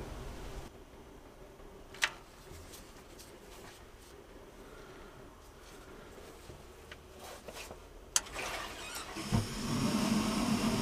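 Vaillant combi boiler's gas burner lighting with a sudden boom about nine seconds in, after a click and a rising hiss, and going straight to high flame with a steady low burn. It is meant to take a few seconds to build up, so the instant jump to full flame is a fault in the gas valve's slow-light setting.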